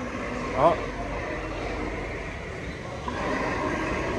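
Steady background din of a big-box store interior, with faint voices from about three seconds in. A man says "oh" about half a second in.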